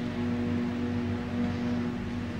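A steady low hum with a constant pitch, unchanging throughout, over a faint hiss.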